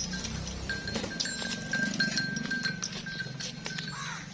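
Background music with a held high note that breaks off and returns, over scattered knocks and scuffs from a Jersey–Friesian cross cow being led across a dirt yard.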